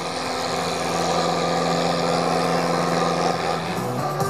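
Diesel farm tractor engine running steadily under heavy load as it drags a tractor-pulling sled slowly down the track. Its pitch dips briefly near the end.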